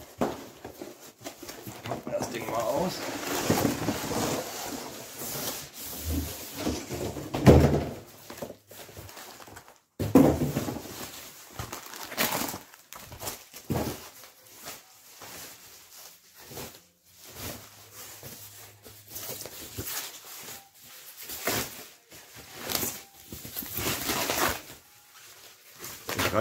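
Guitar packaging being handled: cardboard box flaps and inner packing scraped and knocked, then a thin plastic wrapping bag crinkling and rustling as it is pulled off the guitar. The sound is irregular and uneven, with a few louder bumps along the way.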